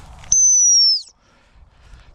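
A single long blast on a gundog whistle: one steady, piercing high tone of just under a second that dips slightly in pitch as it cuts off. It is the sit (stop) whistle, the signal for the spaniel to sit on the spot.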